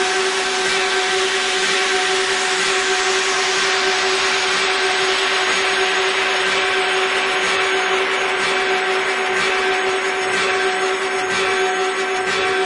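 Electronic music: a dense wash of hissing noise over a steady held drone tone, with no clear beat; the highest part of the hiss thins out after a few seconds.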